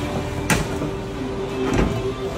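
Pickup truck tailgate latch released with a sharp click about half a second in, then the tailgate opening with a softer knock near the end.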